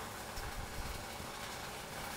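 Steady low background rumble with a faint hiss, without distinct events.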